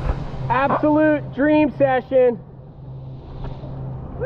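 A person whooping loudly four times in quick succession, drawn-out wordless calls, over a steady low hum.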